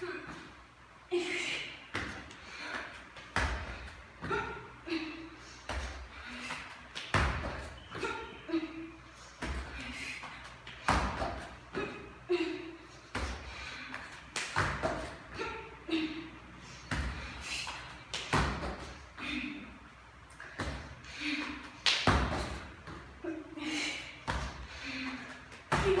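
Bare feet and hands thudding on a hard gym floor during repeated burpees, a thud every second or so, with short voiced breaths from the exerciser between landings.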